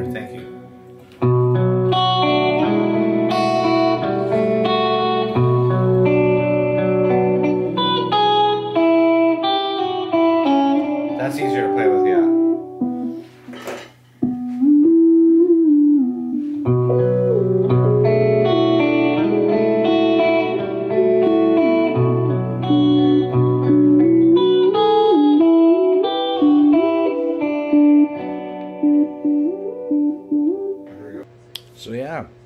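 Electric guitar music: sustained chords over a steady low part, with a melodic line that bends in pitch. It drops out briefly about a second in and again about halfway through.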